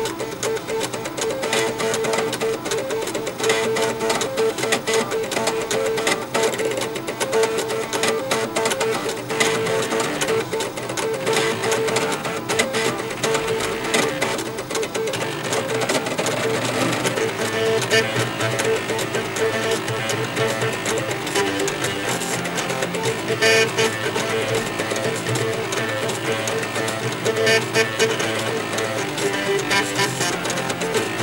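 Eight floppy disk drives playing a tune on their head-stepper motors, the read/write heads stepped back and forth at note pitches so each drive sounds one line of the melody.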